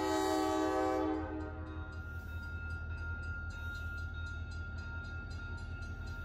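Diesel locomotive air horn blasting, a loud steady multi-note chord that cuts off about a second in. After it, the locomotive's engine idles with a steady low rumble and a faint regular ticking about three times a second.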